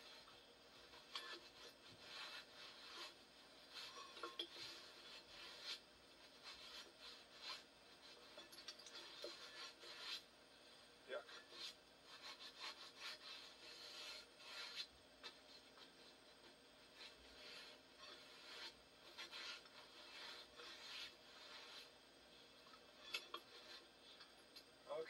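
A rag in a gloved hand wiping white grease off a tractor's metal rear brake drum: faint, irregular rubbing strokes, one after another.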